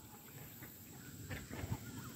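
Faint calls from waterfowl, a few short ones in the second half.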